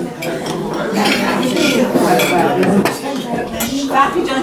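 A metal knife and serving spoon clicking and scraping against a ceramic platter as a soft dessert is cut and served, with several short clinks.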